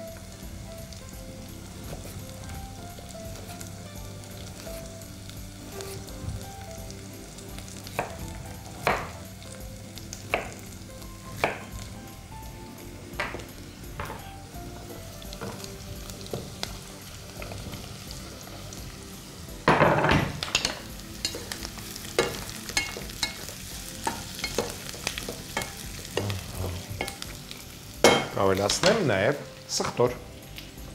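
A knife cutting pumpkin on a wooden board, a single cut every second or two. About two-thirds of the way in, pumpkin cubes are tipped into a hot pot of onions and start sizzling loudly, and there is a second loud burst of frying near the end.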